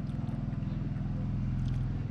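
A small engine running steadily: a low, even hum with a fine regular pulse.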